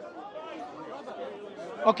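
Speech only: a faint voice further from the microphone answering, over outdoor background chatter, with a close man's voice cutting in right at the end.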